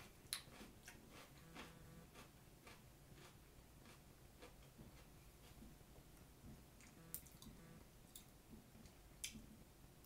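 Near silence with faint chewing and mouth sounds from someone eating a piece of syrup-covered pepper. A few sharp clicks cut through: the loudest just after the start, two more toward the end.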